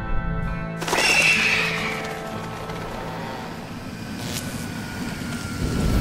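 Soundtrack music breaks off about a second in with a sudden loud crash burst and a falling screech. After it a thin ringing tone sinks slowly in pitch over a low rumble: sound effects of the plane crash and its aftermath.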